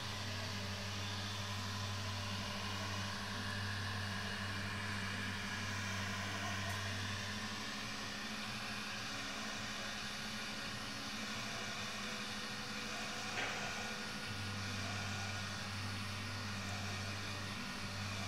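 Electric heat gun blowing steadily, its fan running with a low hum, as it melts wax on a smoke-fired clay pot. The hum drops away for several seconds in the middle, and there is one short click about 13 seconds in.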